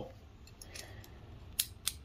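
Two short, sharp metal clicks, about a quarter second apart, from a small Channellock slip-joint plier being handled, its steel jaws and pivot clicking.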